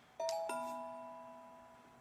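A two-note chime: a higher note, then a lower note about a third of a second later, both ringing on and slowly fading.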